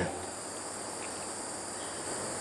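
Steady high-pitched chorus of night insects.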